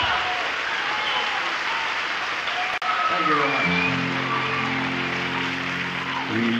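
Live concert taped from within the audience: the crowd applauds and calls out, and about halfway through, after a brief dropout, the band comes in with a held chord.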